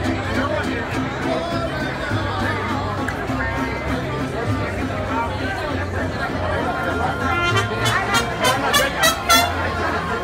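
Crowd chatter over background music with a steady bass line. From about seven seconds in, a voice close to the microphone speaks in loud, sharp bursts.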